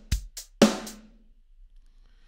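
MT-PowerDrumKit sampled drum kit playing a MIDI beat with the velocity and timing humanizer switched on. There is a kick, a couple of hi-hat ticks and a snare hit in the first second, then the playback stops.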